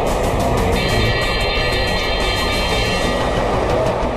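Intro theme music with a loud rushing noise effect over it. A cluster of high steady tones comes in about a second in and drops out near three seconds.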